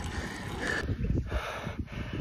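Wind buffeting the microphone over a low rumble of road noise from a road bike ride. A little under a second in, it cuts to a different, rougher wind noise.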